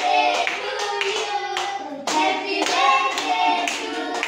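A group of children clapping in time, about twice a second, while voices sing along.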